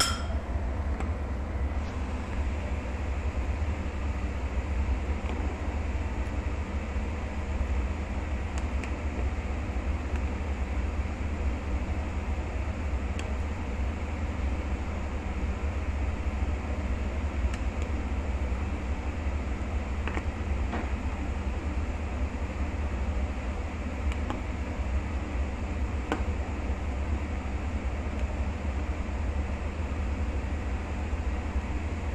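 A pot of sinigang broth boiling on a gas burner: a steady low rumble and hiss, with a few light clicks of a metal ladle against the pot.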